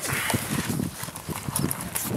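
Handling noise as a ballistic-nylon shoulder pack is picked up: a quick, irregular run of knocks and rustling as the bag and its buckles jostle against the camera and the car interior.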